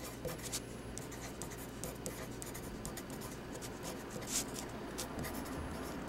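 Pen scratching on paper as words are handwritten: a run of short, irregular strokes, with one louder stroke a little past the middle.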